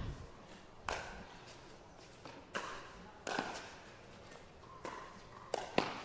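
Pickleball rally: a hard paddle strikes the plastic ball, with ball bounces on the court, as several sharp, short pops at uneven spacing over a faint hall murmur.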